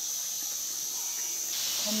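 A steady high-pitched chorus of insects in summer woodland, changing a little in character about one and a half seconds in.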